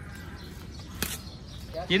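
A single sharp crack about a second in, a badminton racket striking the shuttlecock, over a steady low background noise.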